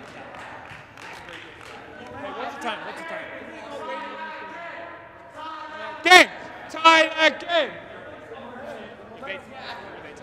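Men's voices across a large indoor sports hall: distant talk among players, then a loud shout about six seconds in followed by three short shouts.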